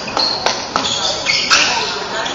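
Basketball sneakers squeaking on a hardwood gym floor in short high-pitched chirps, strongest over a second in, while the ball bounces sharply on the floor a few times. Players' voices are heard in the hall.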